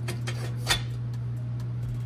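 Light metallic clinks and a sharper tap a little under a second in, as a stainless steel exhaust bellow is handled and fitted onto the downpipe section, over a steady low hum.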